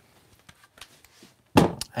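A few faint clicks of a cordless screw gun being handled, then a knock about a second and a half in as it is set down into a plastic tool box, followed by a man starting to speak.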